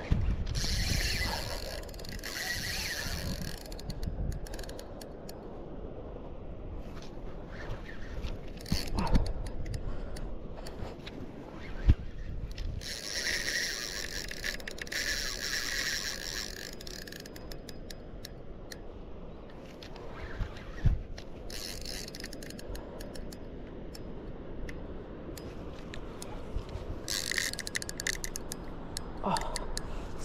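Spinning reel under load from a big fish: three spells of several seconds of rapid mechanical clicking from the reel, about a second in, in the middle and near the end, with a few sharp knocks of handling between.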